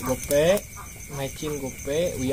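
A chicken clucking: several short calls in a row.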